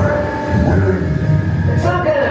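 Deep, steady rumble from a ride pre-show's sci-fi sound effects, played through the room's speakers.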